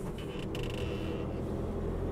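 Inside the cab of a VW Crafter van driving slowly, a steady low rumble of engine and road, with a faint brief creak of the cab between about half a second and a second and a half in.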